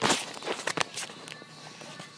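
Handling noise: a brief rush of rubbing at the start, then a quick run of knocks and taps over the first second or so, with one more a little later, as a phone and a small ceramic bowl are moved about and the bowl is set down.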